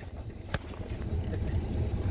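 Low steady rumble of a car running, heard from inside the cabin, with one sharp click about half a second in.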